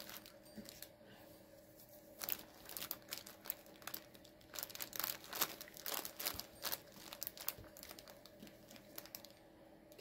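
Faint, irregular rustling and crinkling as a printed cross-stitch canvas is smoothed flat by hand and a tape measure is laid across it.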